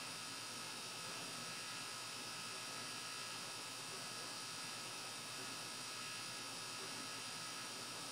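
Steady faint hiss with a constant electrical hum and buzz, unchanging throughout, with no distinct events.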